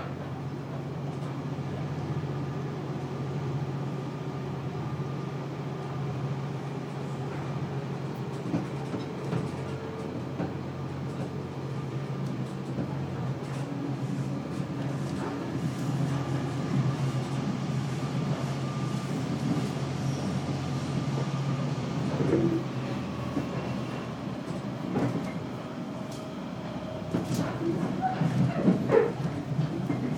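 Moving passenger train heard from inside the carriage: a steady running rumble with a low hum, and a run of clanks and rattles near the end.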